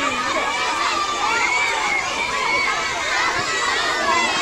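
A large crowd of children shouting and cheering all at once, many high voices overlapping in a steady din.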